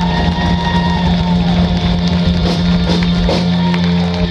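Live alt-country rock band playing an instrumental passage, guitars and drums over a steady low held note, with drum and cymbal hits in the second half.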